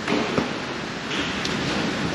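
Steady rushing noise of heavy rain on a corrugated metal workshop roof during a storm, with a single light knock about half a second in.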